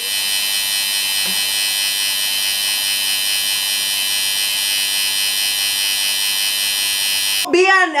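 Tattoo machine buzzing steadily while inking outline work into the skin of a forearm; the buzz stops abruptly near the end.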